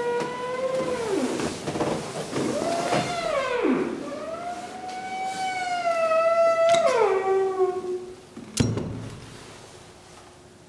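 A dog howling: three long, wavering howls, the last one the longest, each sliding down in pitch as it ends. A single thud follows about a second after the last howl.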